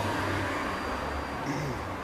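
Steady street traffic noise: the low rumble of a motor vehicle's engine over road noise.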